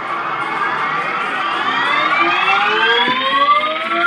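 Electronic sound effect of a boxing arcade machine tallying a punch score: several overlapping tones climb steadily in pitch as the score counts up.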